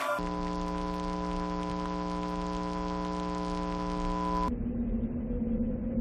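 Steady electrical hum made of several fixed tones. About four and a half seconds in it gives way to a duller, noisier hum with one low tone.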